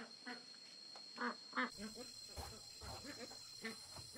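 Ducks quacking in short calls, repeated several times, over a steady high-pitched insect drone, with a few faint low thumps in the second half.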